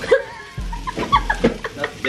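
A woman laughing in a run of short bursts.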